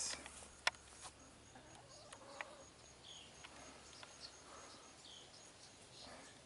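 Faint outdoor quiet: a high, evenly repeated insect chirping, a couple of short high chirps and a few light clicks, the sharpest about a second in.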